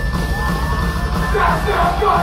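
Live punk band playing loud: electric guitars, bass and drums, with yelling over the music from about halfway through.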